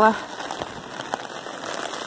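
Heavy rain drumming on an umbrella canopy held overhead: an even hiss of rain with scattered taps of individual drops.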